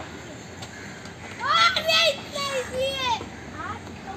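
Children shouting and calling out while playing, in high voices that rise and fall; the loud calls start about a second and a half in and stop shortly before the end.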